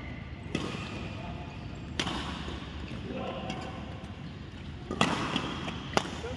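Badminton racket strings striking a shuttlecock in a serve and rally: a few sharp hits a second or more apart, the loudest near the end, ringing in a reverberant sports hall.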